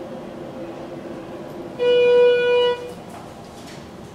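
Schindler elevator hall lantern arrival tone: a single steady electronic beep lasting just under a second, about two seconds in.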